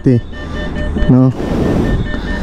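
NCR ATM beeping in a steady, evenly spaced series of short high beeps, the prompt to take the dispensed cash and receipt. Near the end comes a short, even mechanical whirr from the machine that starts and stops abruptly.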